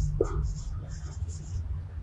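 Marker pen writing on a whiteboard: a run of short, faint squeaky strokes as letters are written.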